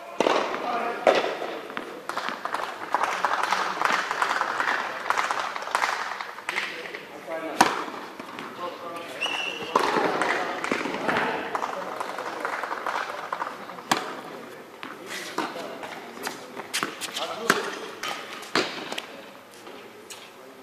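Tennis balls being struck by rackets and bouncing, sharp pops at irregular intervals that echo in a large indoor hall, over a steady background of indistinct voices.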